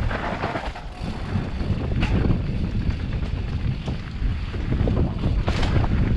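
Wind buffeting the camera microphone during a fast mountain-bike descent on a dirt trail, with the tyres rolling over dirt and stones and the bike giving scattered knocks and rattles, the sharpest about two seconds in and near the end.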